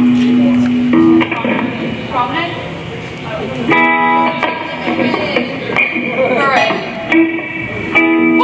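Electric guitars played loosely through amplifiers during a soundcheck: a couple of held notes at the start, then short phrases and a chord about halfway through, with voices talking.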